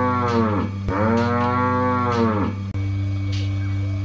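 A cow mooing twice in long calls that rise and fall in pitch, the second ending about two and a half seconds in. Under the calls runs the steady low hum of a milking machine's vacuum pump, with a faint hiss about once a second.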